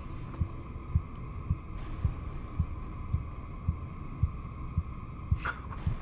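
Low heartbeat-like thuds about twice a second over a steady droning hum: a tension pulse in a horror film's soundtrack.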